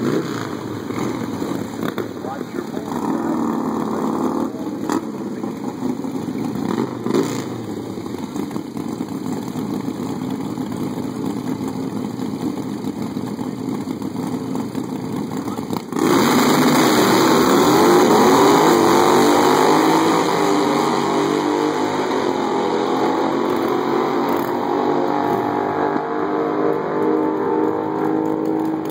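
Harley-Davidson V-twin drag motorcycles idling and revving at the starting line. About sixteen seconds in they launch at full throttle, the engine sound jumping to its loudest and rising in pitch through the gears, then slowly fading as the bikes run down the quarter-mile.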